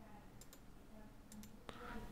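Computer mouse clicking faintly, a few clicks with the clearest near the end, over near-silent room tone.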